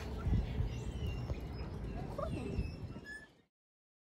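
Outdoor ambience, mostly a low rumble of wind on the microphone with a few faint high chirps. The sound cuts off abruptly about three and a half seconds in.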